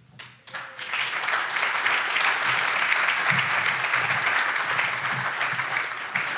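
Banquet audience applauding a speaker coming to the podium: steady applause that starts about a second in and eases off slightly near the end.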